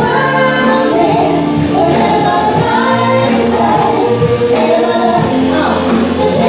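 A live pop cover band playing, with keyboard, electric bass and drums under several singers holding notes together in harmony.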